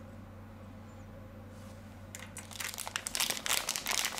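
A faint steady hum for about two seconds, then plastic packaging crinkling as it is handled, a dense run of small crackles that grows louder toward the end.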